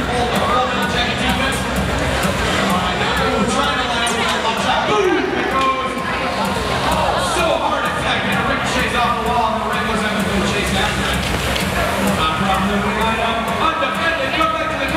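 Music playing over a hall's public-address system, with an announcer's voice and crowd noise mixed in.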